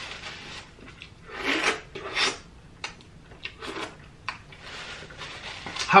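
Paper napkin rubbing and rustling as a mouth and hands are wiped, with two louder swishes about one and a half and two seconds in, then a few faint clicks.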